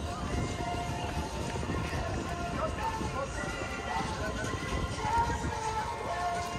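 Busy pedestrian boardwalk ambience: people talking, music playing, and steady walking footsteps on pavement.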